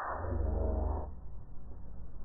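Cartoon soundtrack run through a meme effects chain: muffled, with no treble and heavy booming bass. It swells loud in the first second, then eases.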